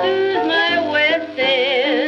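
A 78 rpm record of a woman singing jazz with solo piano accompaniment, her voice on held notes with a wide vibrato over piano chords.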